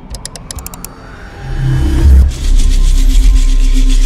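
Intro sound effect of toy plastic bricks snapping together: a rapid run of sharp clicks in the first second. After that comes a rising swell into a loud, deep, bass-heavy music hit that holds.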